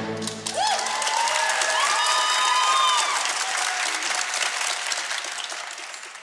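Theatre audience applauding with a few whooping cheers, just as the orchestra's final held chord dies away in the first half second. The clapping fades toward the end.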